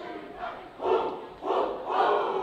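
A cheerleading team shouting a chant in unison from their huddle, two loud group shouts, the first just before a second in and the second near the end.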